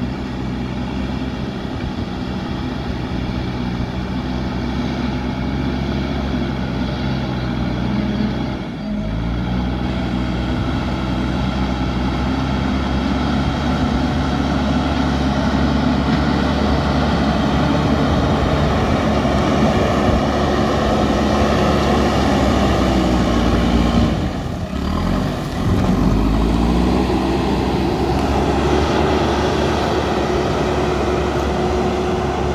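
The diesel engine of a JCB backhoe loader runs under load as its front bucket pushes soil. The engine note is steady, drops out briefly about a third of the way in, then falls and climbs back in pitch about two-thirds of the way through.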